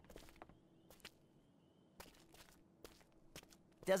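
Soft, irregular footsteps going down wooden stairs, a scattering of light taps, from an animated cartoon's soundtrack.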